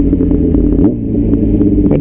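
Yamaha YZF-R6 600 cc inline-four sportbike engine running steadily under way, with low wind rumble on the helmet-mounted microphone. About a second in the engine note dips briefly, then climbs back up.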